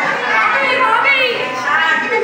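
Schoolchildren's voices talking and calling over one another, with no single clear speaker.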